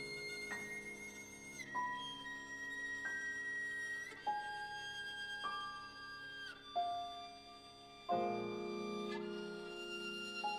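Violin and grand piano duo playing a slow passage: the violin holds long high notes, one after another, over soft piano chords struck every second or two.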